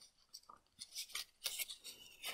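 A paper strip being folded and creased by hand: a few faint, brief rustles and scrapes of paper.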